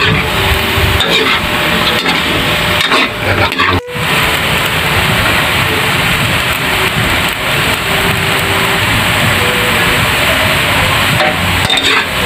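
Hot dog slices and minced garlic frying in an aluminium wok, sizzling steadily while a metal spatula scrapes and stirs against the pan. The sound drops out for an instant just before four seconds in.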